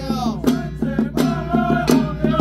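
Handheld ritual frame drums of a Taiwanese little ritual troupe beaten together in a steady beat of about two or three strokes a second, under men chanting the altar-clearing liturgy.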